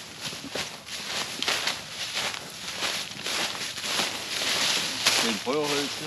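Footsteps wading through a thick layer of fallen autumn leaves, a continuous rustling and crunching with each step. Near the end there is a brief voice sound.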